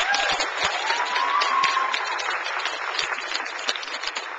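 Audience applauding: dense, steady clapping from many hands. One drawn-out call rises and falls above the clapping between about one and two seconds in.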